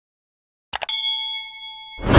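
Sound-effect mouse clicks, two or three in quick succession about three-quarters of a second in, followed by a bright bell-like ding that rings on and slowly fades. This is the notification-bell chime of a subscribe-button animation.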